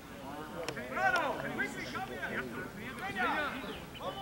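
Voices of several people talking and calling out, no clear words, with one short sharp click a little under a second in.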